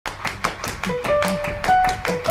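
Background music: quick, evenly spaced percussive taps with short held plucked notes stepping upward in pitch.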